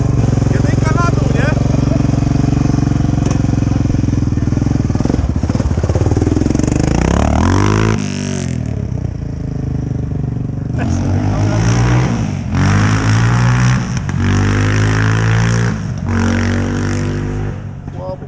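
A quad's single-cylinder engine idles close by, then revs up with a rising pitch. From about eight seconds in, a quad accelerates in about five rising runs, each ending in a drop in pitch as it shifts or lets off. The accelerating quad is the Suzuki LTZ 400 fitted with a Yamaha Raptor 700 engine, on a test ride after the swap.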